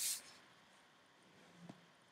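A brief rustle of hanging clothes at the start, then quiet room tone with one faint tap near the end.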